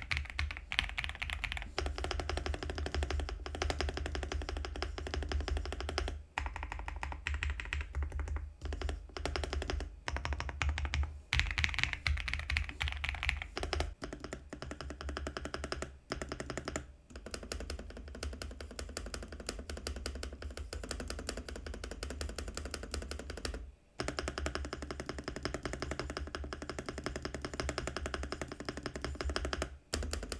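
Fast typing on an Ajazz AK820 Max mechanical keyboard with avocado switches: a dense run of key clacks over background music. In the second half it becomes spacebar presses compared against a second keyboard.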